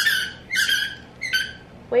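A dog whining for attention and play, three short high-pitched whines.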